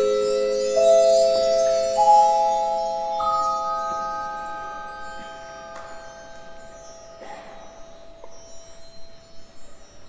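Tuned mallet percussion playing a few single notes about a second apart, each left to ring for several seconds so they overlap, over a high shimmer at the start. The ringing fades away to quiet.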